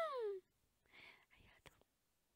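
A woman's voice drawing out the end of a word on a falling pitch, then going almost quiet, with faint breathy whispering about a second in.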